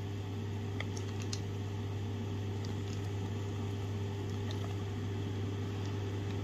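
Steady low machine hum with a few faint light clicks and taps as thick beetroot cake batter is scraped off a utensil into a metal loaf tin.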